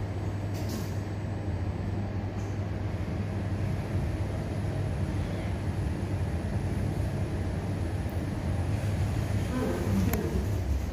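Schindler 5500 passenger lift car travelling up one floor: a steady low hum and rumble of the car in motion, with a short click near the start as the doors finish shutting.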